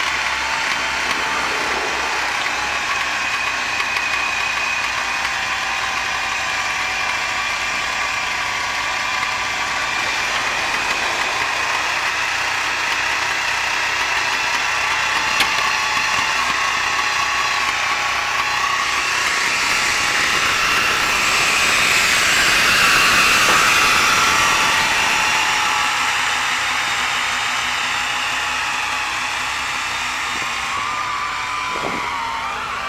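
Engines running as a homemade machine is unloaded down the tilted flatbed of a ZIL-5301 tow truck, with a faint steady whine over the running. The sound swells for several seconds past the middle, as the machine drives down off the platform, then eases.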